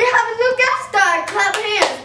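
A young girl's voice, animated and pitched, with several sharp handclaps in among it.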